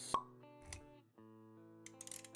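Intro sting music: sustained held notes with a sharp pop sound effect just after the start and a soft low thud a little later, then a few light ticks near the end.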